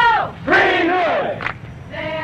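Voices chanting together: a long call that falls in pitch at the start, then a second long call that rises and falls, fading out near the end.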